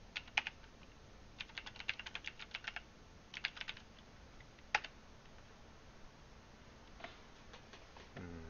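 Computer keyboard typing in bursts while a file name is entered: a few keystrokes, then a quick run of about a dozen, another short run, and one sharper single keystroke about halfway through, with a couple of faint clicks near the end.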